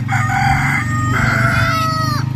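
A rooster crowing: one crow in two held parts, the second longer and dropping in pitch as it ends, over a steady low hum.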